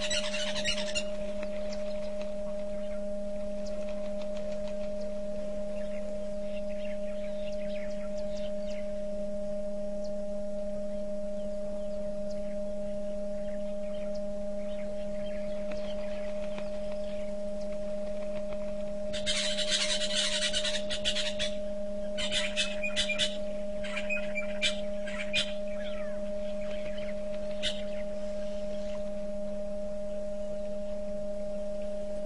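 A steady low electrical hum with a higher steady tone above it, over which birds chirp: a dense burst of calls about two-thirds of the way in, then a run of short chirps.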